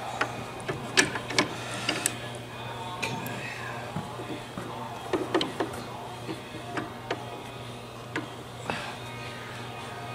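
Scattered metallic clicks and clinks as a bolt is handled and fitted back into a Gatling gun's revolving bolt mechanism, with a steady low hum underneath.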